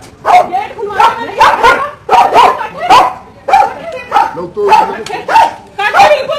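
A dog barking over and over, about two barks a second, with people's voices mixed in.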